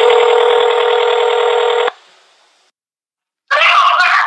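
Telephone ringback tone heard down the line: one steady ring lasting about two seconds, then a pause, as the call waits to be answered. A voice comes on the line near the end.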